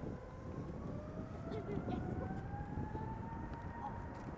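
Airbus A380's four Engine Alliance GP7200 turbofans spooling up on the takeoff roll: a whine rising steadily in pitch over a low rumble.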